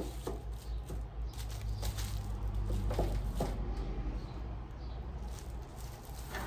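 Plastic shrink-wrap bags and film rustling and crinkling as they are handled. There is a sharp click at the start and a few light taps, over a steady low hum.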